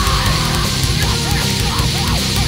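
Live heavy metal band playing loudly: heavy low guitars and drums, with a high line of short rising-and-falling notes repeating several times a second from about halfway through.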